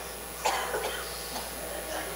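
A single cough about half a second in, from someone in the congregation of a church hall.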